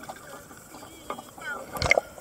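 Sea water lapping and splashing against a camera held at the water's surface, with a louder splash just before the end.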